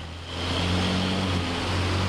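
A motor vehicle's engine running steadily: a low, even hum with overtones over a wash of traffic noise.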